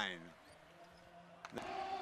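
Faint arena hall background between stretches of commentary, with a single sharp knock about one and a half seconds in.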